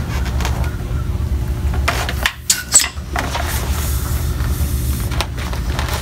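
Handling noises: rubbing, with a few sharp knocks and clicks about two and a half seconds in, over a steady low hum.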